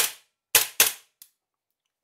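Cybergun FNX-45 gas blowback airsoft pistol firing with an empty, gas-charged magazine, its slide cycling on each shot: three sharp cracks, one at the start and two close together about half a second later, then a faint click. The pistol cycles properly with the sight fitted.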